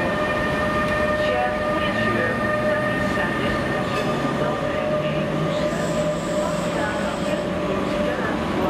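Class 186 electric locomotive hauling an Intercity train, running with a steady electrical whine in several pitches and a low hum that rises in steps from about two seconds in as it picks up speed.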